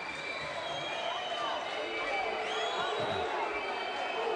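Crowd in a sports hall: a steady background of chatter from the stands with scattered faint calls, while spectators wait on a penalty shot.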